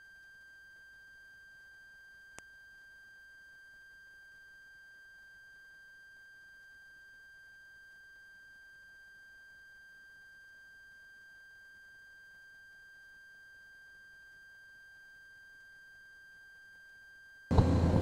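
A faint, steady, high-pitched electronic tone, like a test tone, with a single faint click about two and a half seconds in.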